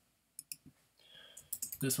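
A few short, sharp clicks of computer operation: three within a split second near the start, then a quick cluster of clicks toward the end.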